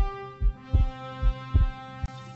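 Heartbeat sound effect: low, dull thumps about twice a second, under a held chord of music.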